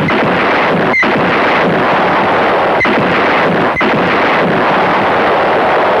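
Loud, continuous battle sound effects from an action-film soundtrack: gunfire and explosions blurred into a dense wall of noise, with a few sharp cracks about one, three and four seconds in.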